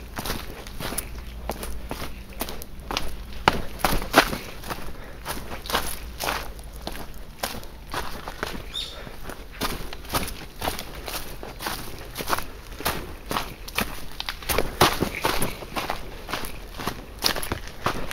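Footsteps of a hiker walking quickly downhill on a leaf-covered dirt and stone trail, an irregular run of crunching steps.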